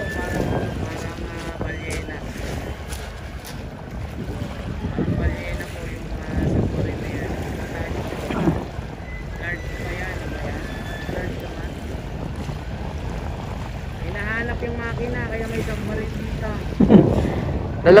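Steady wind buffeting the microphone in the open air, with faint background voices that are clearest a couple of seconds before the end.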